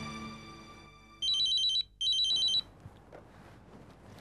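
Telephone ringing: two short electronic trilling rings, a rapid warble between two high pitches, a little under a second apart, as background music fades out.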